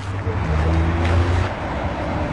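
Outdoor street ambience: a low road-traffic rumble that swells about half a second in and eases after about a second and a half.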